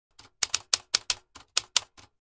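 Typewriter keystroke sound effect: about ten sharp clacks at an uneven typing pace, about five a second.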